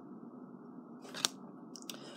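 Cardboard football trading cards being handled and shuffled by hand: one sharp click of a card snapping against the stack about a second in and a smaller one near the end, over faint steady room hiss.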